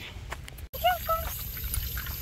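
Water trickling from a push-button pet drinking fountain into its metal bowl, with a few brief faint vocal sounds just before it settles into a steady trickle.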